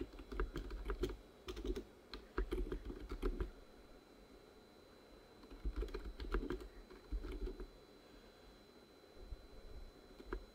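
Computer keyboard being typed on in short bursts of keystrokes, with a pause of about two seconds in the middle.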